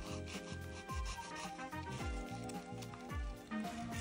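Emery nail file rasping back and forth across a natural fingernail, shaping its tip, over background music with a steady beat.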